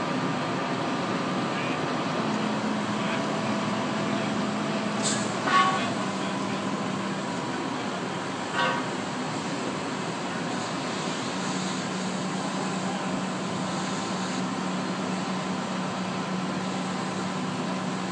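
A fire engine's pump runs steadily under the hiss of water from a fire hose being played on a burnt-out boat. Two short, sharp sounds cut in about five and a half and eight and a half seconds in.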